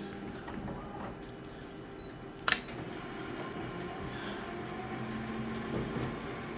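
Colour photocopier starting a copy job: a steady machine hum, a short high beep and a single sharp click about two and a half seconds in, then the hum of the copier scanning and printing grows steadier.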